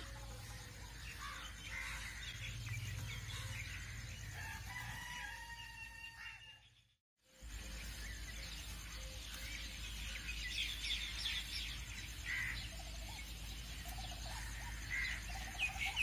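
Faint rooster crowing once, about four seconds in, over faint background bird chirping; the sound cuts out for a moment just before halfway, then the faint chirping goes on.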